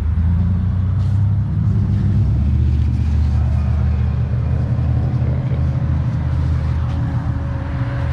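A motor vehicle engine running steadily: a loud, low drone that shifts slightly lower in pitch about two seconds in.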